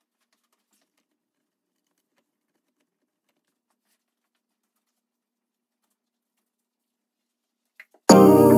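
Near silence: faint room tone with a low steady hum and scattered faint ticks, and one slightly louder click near the end.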